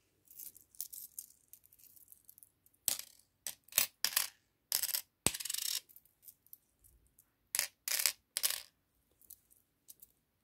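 Metal medallion charms dropped one after another onto a framed reading board, clinking and rattling as they land in a string of short bursts, mostly from about three to six seconds in and again near eight seconds.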